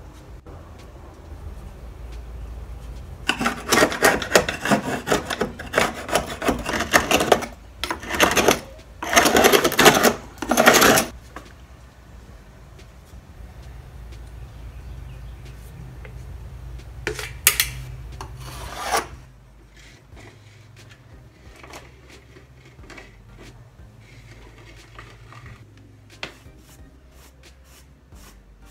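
Rough scraping and rubbing against a wooden door jamb: a run of loud strokes for several seconds, then a shorter burst, then quieter handling sounds.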